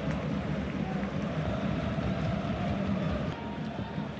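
Steady field ambience of a football match in a stadium with empty stands: an even hiss of outdoor noise with faint distant voices and no crowd.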